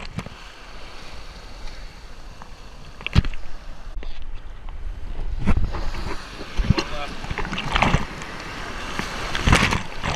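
Breaking ocean surf and whitewater washing around a camera held at water level, with a steady rush of churning water. Waves slap and splash over the camera several times, about 3 s in, twice between 5 and 7 s, again around 8 s, and loudest near the end.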